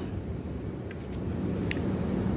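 Low, steady background rumble, with a faint click near the end.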